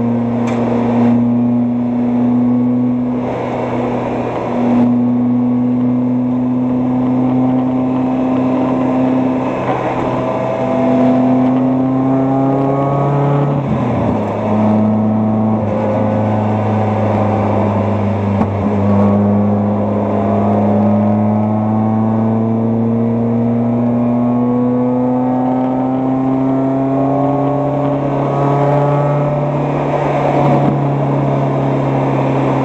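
Mazda Miata race car's four-cylinder engine pulling hard under acceleration, heard from inside the cabin. Its pitch climbs slowly, with a brief drop about halfway through as it shifts up a gear.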